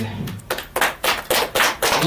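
A small group of people clapping their hands, uneven overlapping claps starting about half a second in.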